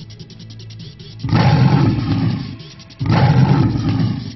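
Two loud lion-roar sound effects, each starting suddenly and lasting about a second, the first about a second in and the second near the end, over background music with a steady low drone.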